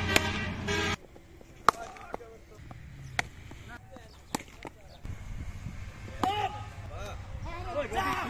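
Players shouting across a cricket field, with a loud call in the first second and more shouts near the end. Several sharp knocks come in between, the loudest about two seconds in.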